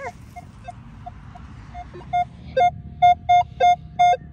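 Metal detector giving its target tone: short beeps at one steady pitch, sparse and faint at first, then louder and quicker at about three a second from about two seconds in, with an occasional lower beep, as the coil is swept back and forth over a buried target.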